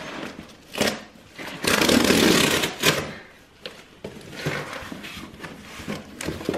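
Cardboard parcel box being opened by hand. A short sharp tear comes about a second in, then a loud ripping sound lasting about a second, then a few clicks and a quieter rustle as the flaps are pulled open.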